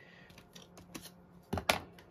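A few faint clicks, then a couple of sharp clicks and knocks about one and a half seconds in, of craft tools being picked up and handled on a desk.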